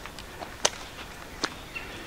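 Two footsteps on a dry, leaf-littered dirt trail, each a short crisp crunch, a little under a second apart.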